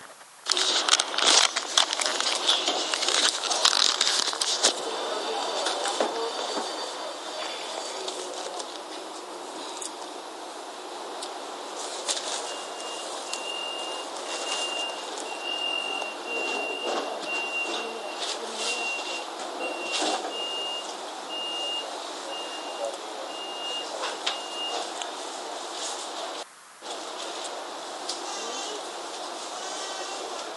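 A handheld voice recorder playing back a recording made on a moving light-rail trolley, heard through its small speaker: steady ride noise with clicks and knocks, busiest in the first few seconds. From about twelve seconds in, a string of short high beeps repeats at an even pitch for some twelve seconds. The sound cuts out briefly near the end.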